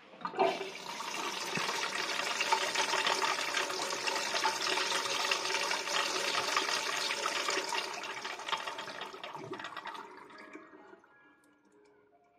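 Thien Thanh wall-mounted ceramic urinal flushing: water rushes into the bowl and down the drain, starting suddenly, running steadily for about eight seconds, then tapering off over the next two or three as the flow stops.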